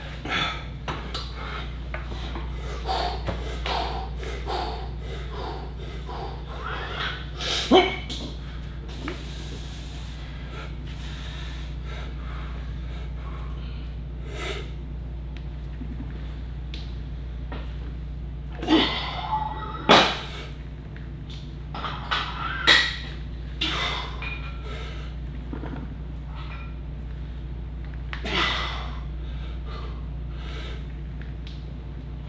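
A man's sharp, loud breaths and exhales during a set of heavy barbell squats, coming several times, the loudest about a third of the way in and in the second half. A steady low hum runs underneath.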